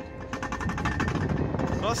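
Alpine coaster sled running fast down its metal rail track, its wheels giving a rapid, even clatter over the track over a low rumble.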